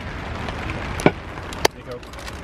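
Rain falling on a tent, a steady even hiss, with two sharp knocks about half a second apart just after the middle.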